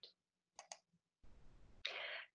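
Near silence: room tone with two faint clicks about half a second in, and a soft breath-like noise near the end.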